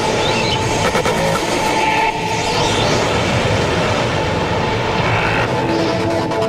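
Breakdown in a psychedelic trance track: the kick drum drops out, leaving a dense, rumbling noise texture under sustained synth tones. The beat comes back at the very end.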